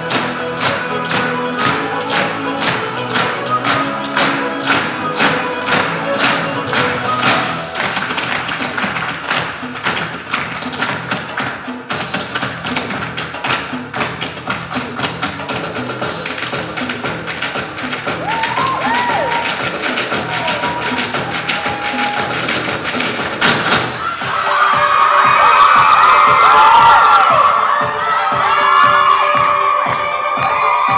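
Irish-style stage dance music with a quick, even rhythm of dancers' hard-shoe taps on the stage floor, most distinct in the first half. The music grows louder about three quarters of the way through.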